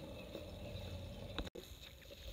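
Faint steady outdoor background noise with no shot fired, broken by a small click about one and a half seconds in and an abrupt cut in the sound right after it.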